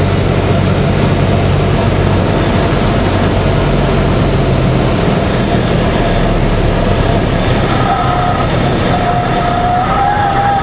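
Cockpit noise of a light single-engine propeller aircraft landing: steady loud engine and airflow noise. The engine's low hum fades about halfway through, around touchdown, and a faint wavering whine comes in near the end during the rollout.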